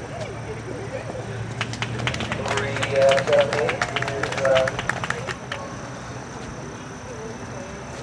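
Scattered clapping from a small group of spectators, starting about a second and a half in and dying away about four seconds later, with voices calling out over it.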